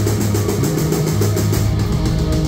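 Live rock band playing on stage, with fast, evenly spaced hits on the drum kit over electric guitar and bass.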